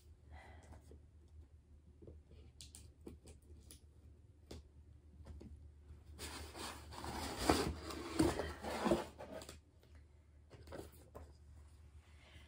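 Contents of a cardboard box being handled and its paper packing rustled by hand: a few faint clicks and taps, then a few seconds of louder rustling about six seconds in, then faint taps again.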